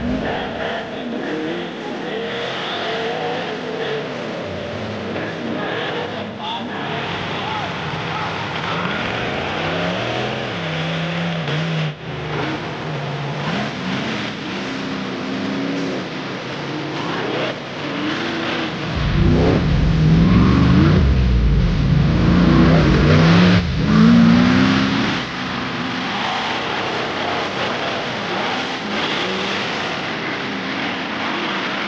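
Off-road race buggies' engines revving hard and repeatedly as the buggies climb steep dirt hills, the pitch rising and falling with each burst of throttle. The engines are loudest and deepest over a stretch past the middle, about 19 to 25 seconds in.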